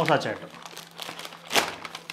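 Brown paper bag crinkling as its folded top is unfolded and pulled open by hand, with a sharp paper crackle about one and a half seconds in.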